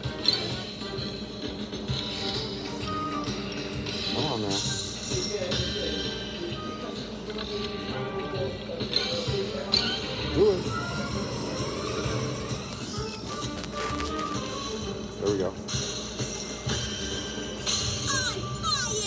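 Video slot machine being played, spin after spin, its short electronic tones and jingles mixed with music and background voices of a casino floor.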